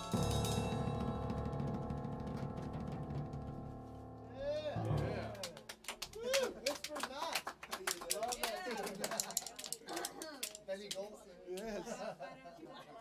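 Final chord of a solo on a Yamaha upright piano, struck at the start and ringing out for about five seconds as it fades. Then a small group claps, with voices calling out over the applause.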